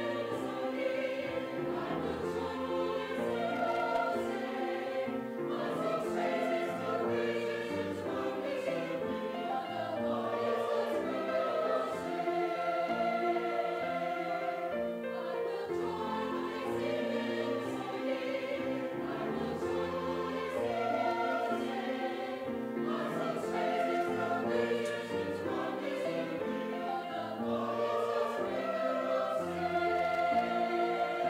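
Choral music: a choir singing held chords that change every second or two.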